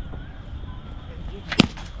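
A cricket bat striking the ball: a single sharp crack about one and a half seconds in.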